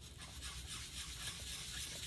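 A round foam ink-blending tool rubbed back and forth across paper, a steady hissing rub.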